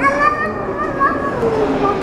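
Voices talking, with high-pitched children's voices standing out over a general background murmur.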